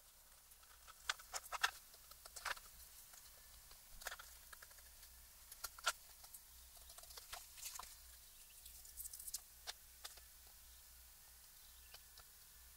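Faint, scattered rustles, small scratches and light taps of hands smoothing down paper and cloth on a hardcover book case and folding the case at its spine.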